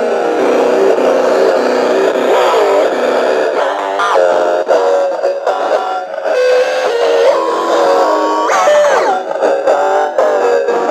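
Circuit-bent toy electric guitar playing glitchy electronic tones: stepped, warbling notes, with a quick upward pitch sweep near the end. The altered sound comes from toggle switches added to its body.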